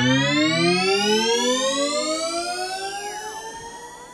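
Synthesized magic-spell sound effect: a pulsing stack of tones gliding steadily upward, growing fainter as it rises, with a faint falling sweep near the end.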